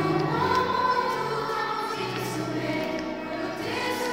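A children's choir singing together in sustained, steady notes.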